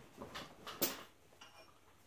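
A few light clicks and taps of metal gibs being picked up and handled on the workbench, all within the first second, the strongest just before the one-second mark.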